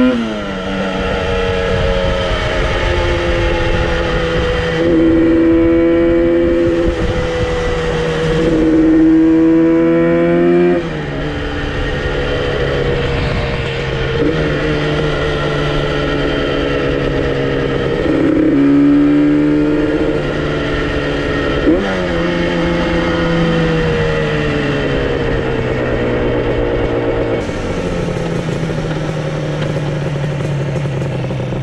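Yamaha RD350's two-stroke parallel-twin engine under way, its pitch climbing and dropping back several times as it is revved through gear changes and eased off. Underneath is a low rush of wind on the microphone. The freshly fitted clutch kit with stiffer springs is pulling without slipping.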